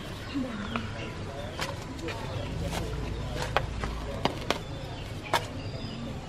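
A hand hoe striking garden soil in several sharp, irregularly spaced knocks while digging up galangal root.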